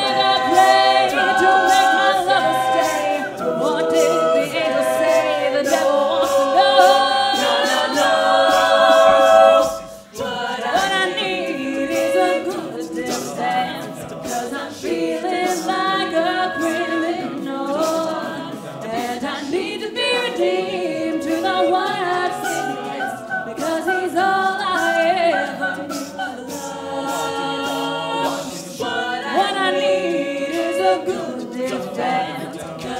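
Co-ed a cappella group singing: a female lead at the microphone over sung backing harmonies from the rest of the group. The singing breaks off briefly about ten seconds in, then carries on.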